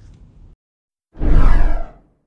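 An editing whoosh sound effect, loud and under a second long, sweeping downward about a second in: the transition into the outro card.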